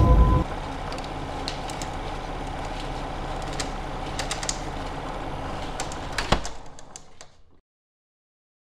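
A steady low hum with hiss and scattered faint clicks, one sharper knock with a thud a little past six seconds in, then it fades out to silence.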